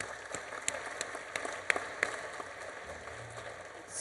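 Audience applauding, the clapping thinning out and fading toward the end.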